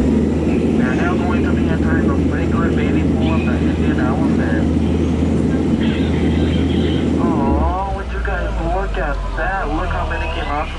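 Jungle Cruise tour boat's motor running with a steady low drone, voices faint over it; about seven and a half seconds in the drone drops away and a person's voice comes through clearly.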